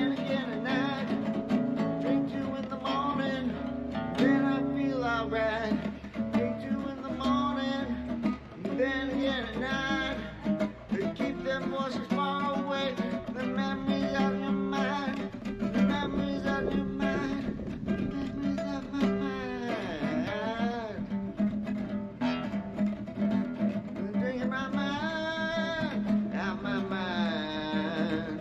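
Acoustic guitar played solo, an instrumental break between sung verses of a song.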